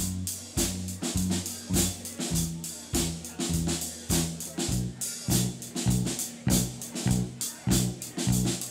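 Live rock band playing an instrumental passage between vocal lines: a drum kit keeps a steady, driving beat under a repeating bass guitar line, with electric guitars.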